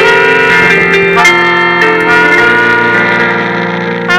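Brass band with trombone and trumpets playing sustained notes in harmony, the chord changing about every half second to a second.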